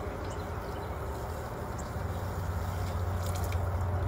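Steady low hum and hiss of background noise, with a few faint light clicks.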